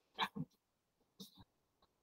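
Mostly quiet, with a brief soft breath and mouth sound from a person about a quarter-second in and a fainter short one about a second later.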